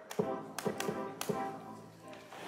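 About five sharp-attack synthesized notes from a neural-network (Google Magenta) synthesizer, each dying away quickly, played on a MIDI keyboard through a small portable speaker.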